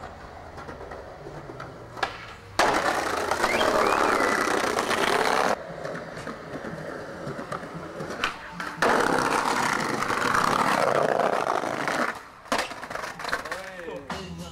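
Skateboard rolling on concrete in two long, loud stretches, with sharp clacks of the board popping and landing between them.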